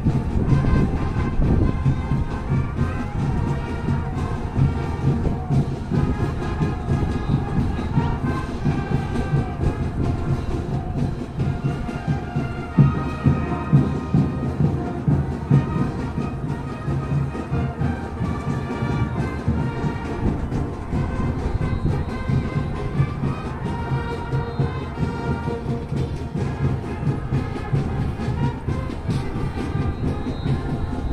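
Band music played across a large open stadium, heard over a steady low rumble.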